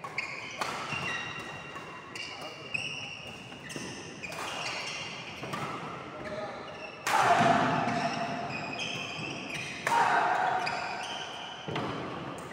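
Badminton doubles rally: repeated sharp racket strikes on the shuttlecock and brief shoe squeaks on a wooden court. Louder voices break in about seven and ten seconds in.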